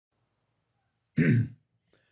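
A man clearing his throat once, about a second in, a short loud burst in otherwise near-quiet room tone.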